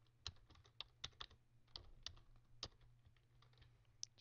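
Faint, irregular keystrokes on a computer keyboard: typing, with a dozen or so clicks clustered in the first three seconds, then only a few.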